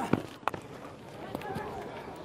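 A cricket ball is struck by a bat with a sharp knock about half a second in, over faint ground ambience with distant voices.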